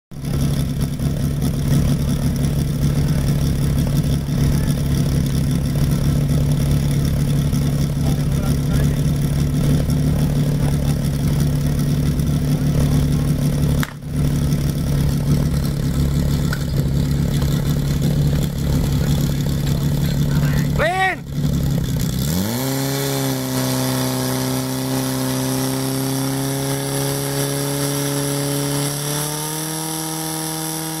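Portable fire pump engine running steadily, then about two-thirds of the way through dipping briefly and revving up quickly to a higher, steady pitch as the pump takes load and drives water into the hoses, rising a little more near the end.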